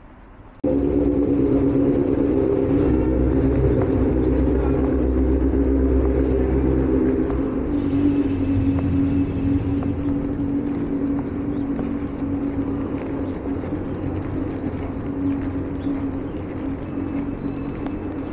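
Loud, steady rumble of a train passing on the elevated railway, with a cluster of steady low tones over it. It starts suddenly about half a second in and slowly eases off in the second half.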